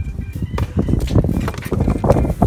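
Large cardboard bicycle box being opened and handled: irregular rustling, scraping and knocks of the cardboard flaps, with handling noise as the phone moves over the box.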